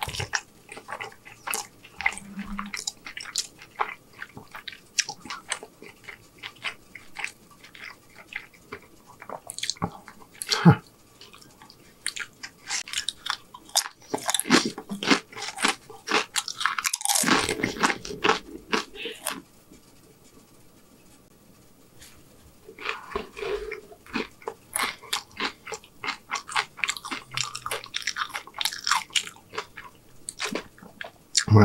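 Close-miked biting, crunching and chewing of crisp-fried birria tacos and tortilla chips, with many small crackles and a louder crunch partway through. There is a short lull about two-thirds of the way in.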